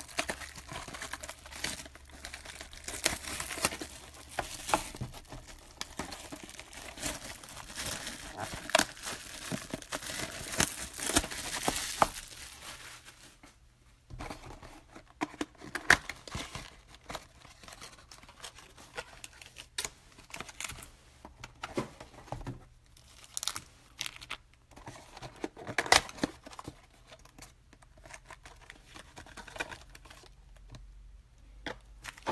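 Plastic shrink-wrap crinkling and tearing as a trading-card box is unwrapped, dense and continuous for about twelve seconds. After a short lull come sparser crinkles and clicks as the wrapped card packs are handled and stacked.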